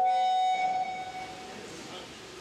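Microphone feedback through the hall's PA system: a single steady ringing tone with overtones. It is loud for about half a second, then fades away over the next second.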